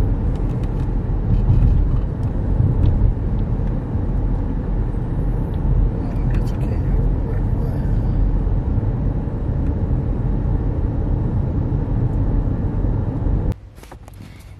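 Road noise inside a moving car's cabin: a steady low rumble of engine and tyres that cuts off abruptly about half a second before the end.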